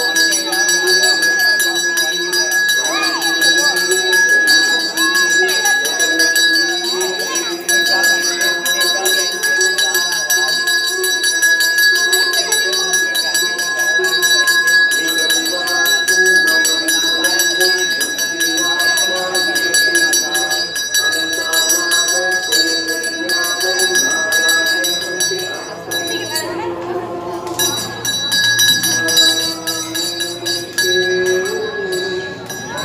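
A brass hand bell rung continuously during an arati, its steady ringing breaking off briefly near the end, over a group of voices.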